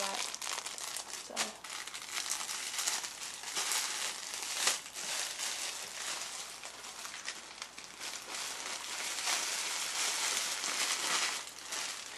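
Plastic packaging bag crinkling and rustling in the hands, with many irregular crackles, as clothing is handled in and out of it.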